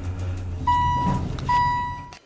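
Elevator car running with a steady low hum, then two electronic beeps of about half a second each, one after the other.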